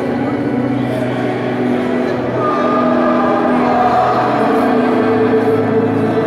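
A crowd singing a hymn in a church, long held notes over the murmur of many voices; the singing grows louder about halfway through.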